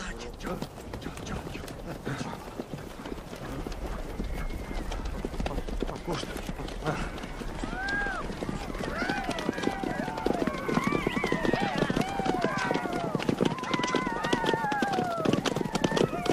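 Horses' hooves clattering fast and close together. From about halfway, many overlapping short rising-and-falling shouts join in and grow denser towards the end.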